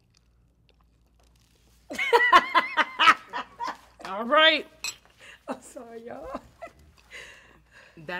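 About two seconds of near silence, then a woman's wordless, sing-song "mmm" sounds of relish as she tastes the soup, her voice gliding up and down, with a light clink of a metal spoon against the bowl.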